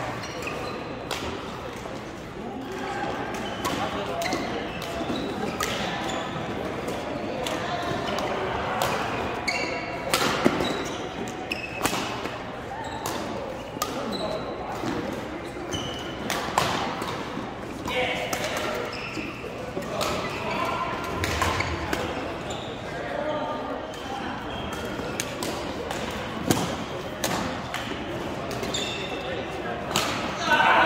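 Badminton rally: rackets striking a shuttlecock in sharp cracks every second or two, over continuous background voices in a large hall.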